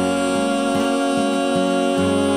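Music from a rock song: a band with guitar holding a steady chord between sung lines.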